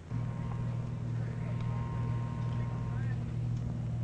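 A steady low machine hum that starts suddenly and runs on evenly, with a faint higher whine over it for most of the time.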